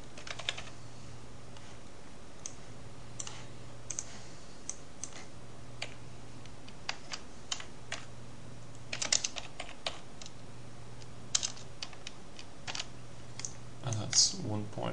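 Keys of a computer keyboard clicking sparsely as numbers are entered, mostly single strokes with a quick run of keystrokes about nine seconds in, over a faint low hum.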